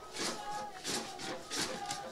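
Faint distant voices with low background ambience from an outdoor stadium. Short calls recur about every half second to second.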